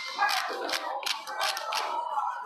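A run of irregular sharp taps and clicks, about ten in two seconds.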